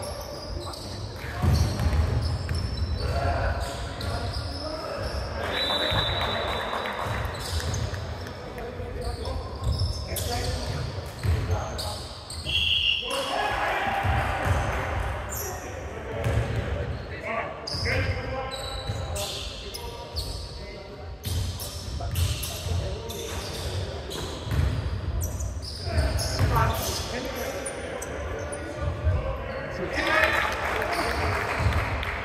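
Basketball bouncing on a hardwood gym floor in game play, with players' voices, echoing in a large hall. Two brief high squeaks come through, about six seconds in and again about thirteen seconds in.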